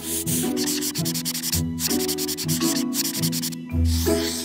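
Brush-tip paint pen scrubbing on paper in rapid scratchy back-and-forth strokes, stopping briefly twice, with music underneath.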